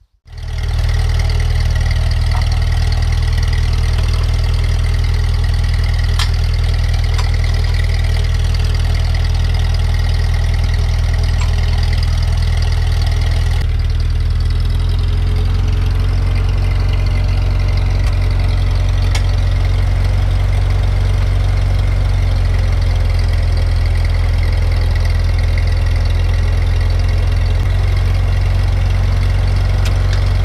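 Ford 8N tractor's four-cylinder flathead engine running at a steady idle, its tone shifting slightly about halfway through.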